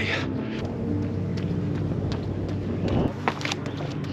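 Wind rumbling on the microphone of a handheld camera while jogging, with a few faint steady tones.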